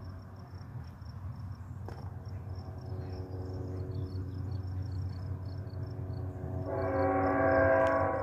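Diesel locomotive air horn, CN 421's, sounding one sustained chord: faint at first from about two seconds in, then much louder near the end. Crickets chirp throughout over a low steady rumble.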